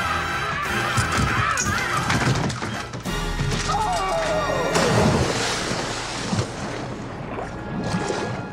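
Film soundtrack of music with crashing, smashing impacts; a little before five seconds in, a falling pitch gives way to a rushing noise like a splash into water.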